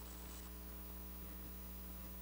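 Steady electrical mains hum with a faint hiss underneath, the low buzz of the room's audio feed.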